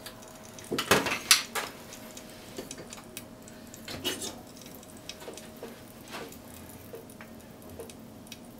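Dishes and utensils clinking and clattering, with a cluster of sharp knocks about one second in and lighter scattered clinks after, over a faint steady hum.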